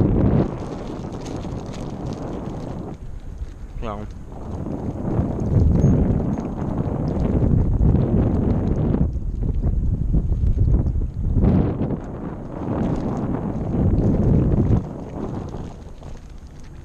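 Wind buffeting the microphone, a loud low rumble that swells and eases in gusts every few seconds. A single spoken "No" about four seconds in.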